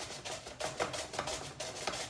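A peeled raw sweet potato rubbed back and forth across the blades of a handheld Pampered Chef Veggie Strip Maker, shredding it in quick repeated rasping strokes, about four or five a second.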